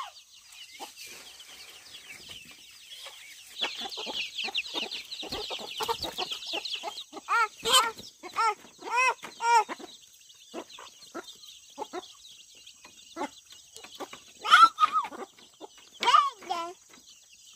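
Hens clucking and chicks peeping. A dense burst of high-pitched peeping comes a few seconds in, followed by a run of louder clucks around the middle and a few more near the end.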